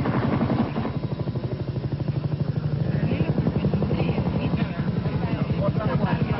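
A machine running with a fast, even throb, about a dozen pulses a second, with faint voices under it from about halfway through.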